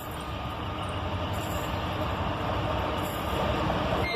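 ALCO RSD-16 and GAIA diesel locomotives approaching, their engine rumble and running noise growing steadily louder.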